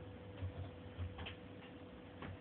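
Faint, irregular clicks and light taps over a steady low electrical hum.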